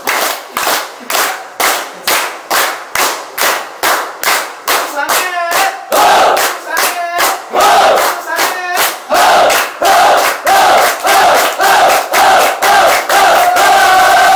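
A group of people clapping in unison at a steady rhythm of about two claps a second. About five seconds in, loud group shouting or chanting joins the clapping and carries on over it.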